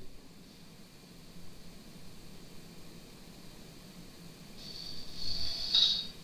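Faint room tone and microphone hiss. A louder soft hiss with a thin high whistle rises over the last second or so.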